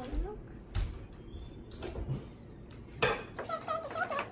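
A few sharp clinks and knocks of metal kitchenware: a metal measuring cup and spoon against a stainless steel mixing bowl.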